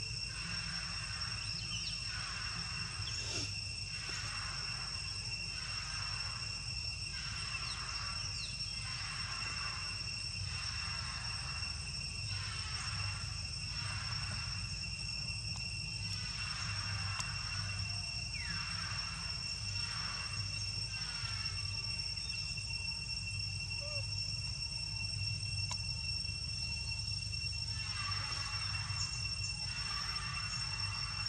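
Forest insect chorus: a steady high-pitched drone with rhythmic pulsing chirps about once a second, over a low hum.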